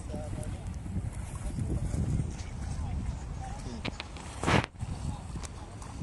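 Faint background voices over a steady low rumble of wind on the microphone, with one short, loud rush of noise about four and a half seconds in.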